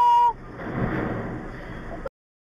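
A car horn sounds in one held blast that stops about a third of a second in, followed by a rougher noise that swells and fades.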